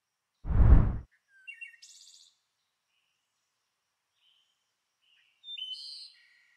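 A short, loud, deep whoosh about half a second in, then a few short bird chirps, and more chirps near the end, over otherwise dead silence: an edited bird-sound effect under a title animation.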